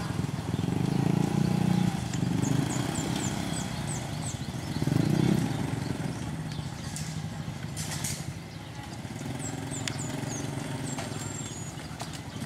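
Small motorcycle engines running at low speed close by, louder for a moment about five seconds in as one moves near, under the chatter of a crowd.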